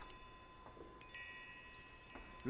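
Faint chalk squeak on a blackboard as characters are written, with a thin high-pitched squeal starting about halfway through and lasting about a second.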